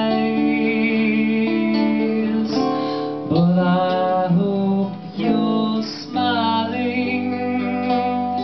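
Acoustic guitar being strummed, with a man singing long held notes with vibrato over it.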